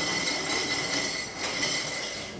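A hissing, static-like noise effect with a steady high whine in it. It starts suddenly and fades away over about two seconds.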